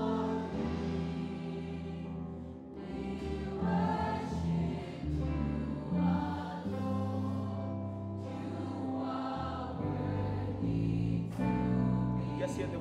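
Gospel praise-and-worship song: a male lead singer singing into a microphone, backed by a choir, over steady musical accompaniment.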